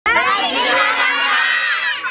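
A crowd of young children shouting and cheering together, many high voices at once.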